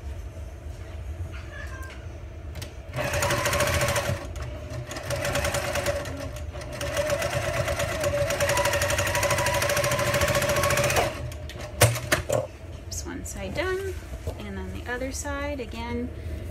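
Electric sewing machine stitching a half-inch seam across a folded fabric corner: a short run of about a second, a brief pause, then a steady run of about six seconds before it stops. A sharp click follows.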